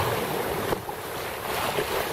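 Water rushing and slapping along the hull of a small open sailing boat, a Drascombe Coaster under sail in a gentle swell, with wind on the microphone. A steady rush that eases slightly about a second in.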